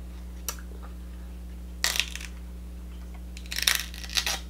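King crab leg shell cracked and snapped apart by hand: a small click, then two short bursts of crackling, about two seconds in and again near the end.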